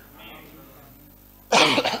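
A man coughing once into his hand: a single short, harsh cough near the end, after a faint intake of breath.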